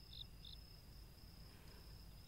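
Faint insect chirping, a steady high trill with a couple of short chirps near the start.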